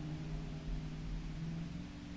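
A steady low hum with a faint hiss behind it: the room tone of the talk's recording.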